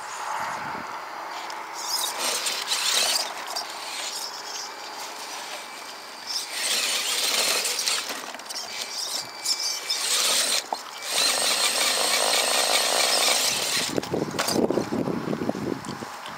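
Small electric motor and gearbox of an RC rock crawler whining in bursts of a few seconds as the truck drives against the rocks.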